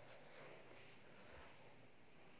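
Near silence: faint room tone, with soft handling of cloth.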